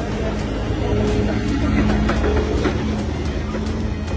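Music with a steady beat over a continuous low rumble.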